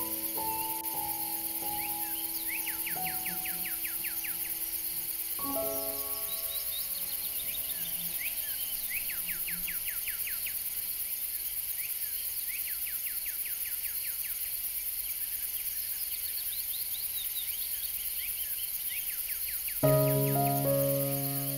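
Soft background music of held notes, with a new chord about five seconds in that fades away, laid over a nature sound bed. In that bed a bird repeatedly sings quick trills of short chirps, over a steady high insect drone.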